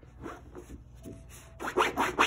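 Husky puppy's claws scratching at the taut fabric deck of a raised Kuranda cot bed in quick rasping strokes, a few softer ones in the first second, then a louder flurry near the end.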